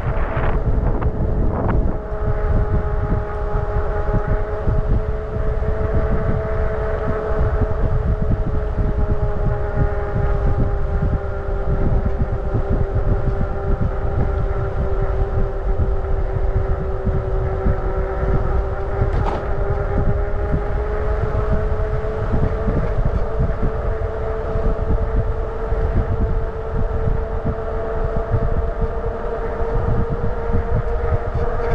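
Motorcycle engine running steadily at low road speed, a steady drone whose pitch sags slightly midway and rises again near the end, with wind rumbling on the microphone.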